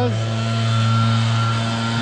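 An engine running steadily at a constant pitch: a low, even hum that does not change.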